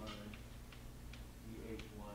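Light, sharp clicks or taps, a few a second at uneven spacing, over a low steady room hum.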